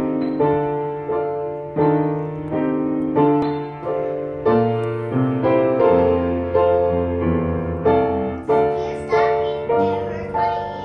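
Upright piano played at a slow, even pace: a melody of single notes and chords struck roughly every half to three-quarters of a second, each ringing on over held bass notes.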